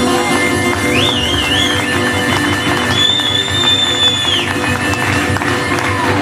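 Acoustic blues band playing an instrumental break. A harmonica lead wavers, then holds one long high note, over acoustic guitar and steady percussive clicking.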